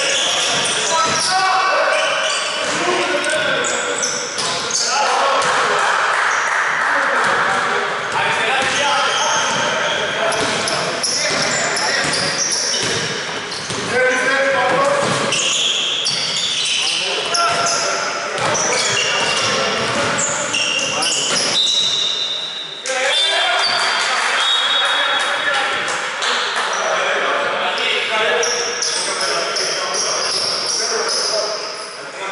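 Sounds of a basketball game in a large gym: a ball bouncing on the wooden court, with players' voices calling out, echoing in the hall.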